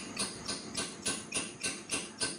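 A small hammer lightly tapping a crossover plug into the exhaust crossover port of a cast-iron Oldsmobile cylinder head, a steady run of sharp metallic taps about three to four a second. The plug is being driven in as a tight test fit.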